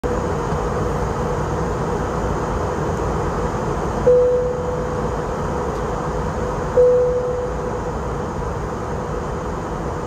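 Steady rush of an Airbus A321's cabin in flight, the engine and airflow noise heard from a window seat. Twice, about three seconds apart, a single-tone cabin chime sounds and fades.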